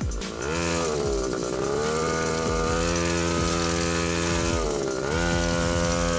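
Small engine of a child-sized mini motorbike running under way, its pitch sagging and climbing back twice, about half a second in and again near five seconds.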